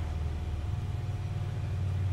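Steady low hum with a thin, faint whine above it: the background noise of the room, with no speech.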